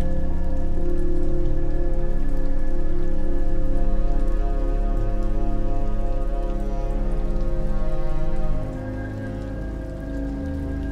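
Steady rain with a patter of raindrops, mixed with slow, sustained chords of soft relaxation music. The music changes chord and drops in level about eight and a half seconds in.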